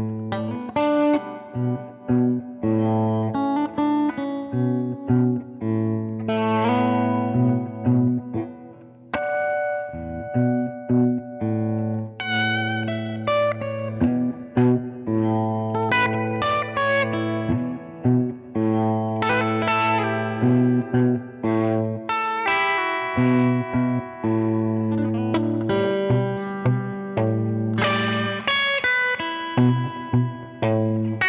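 Electric guitar played through an amplifier, chords and short note runs ringing out with frequent quick dips in loudness that swell back. The guitar's volume knob is being worked while playing.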